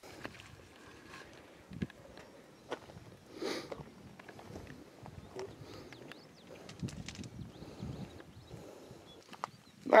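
Faint outdoor background with scattered small clicks and knocks, and a brief voice about three and a half seconds in.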